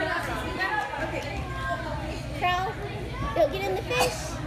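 Children's voices, high-pitched chatter and calls, over a steady low hum.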